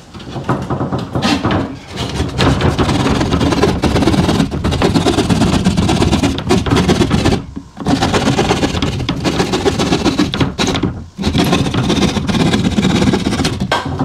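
Red-handled drywall jab saw sawing a round hole through sheetrock in rapid back-and-forth strokes, pausing briefly twice.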